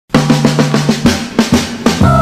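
Drum intro of a 1970 soul record: quick hits, about six a second at first, over a low bass note that steps down about a second in.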